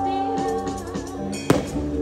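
A live band playing on stage: electric guitar, bass and keyboard holding steady notes, with one sharp hit about one and a half seconds in.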